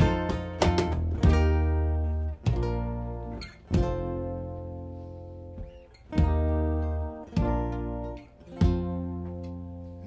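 Live acoustic band passage with no singing: ukulele and acoustic guitars strike chords over deep bass notes. The chords come in quick stabs at first, then single hits about a second apart, each left to ring out and fade.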